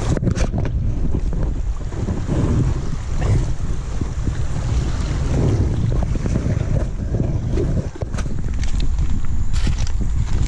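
Rushing water of a river rapid under a paddle board, heavily overlaid by wind buffeting on the microphone, with a few short sharp splashes or knocks.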